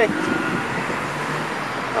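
Steady background noise of road traffic, with no distinct events.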